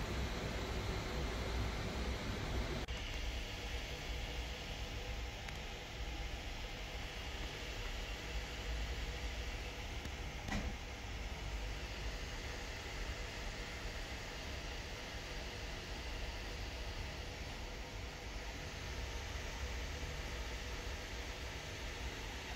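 Steady low hum and hiss of room background noise, of the kind a fan or air conditioner makes, with one faint click about ten and a half seconds in.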